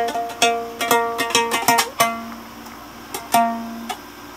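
Homemade plank-mounted string instrument being plucked: a run of notes in the first half, then a few single plucks about two and three seconds in, each left to ring.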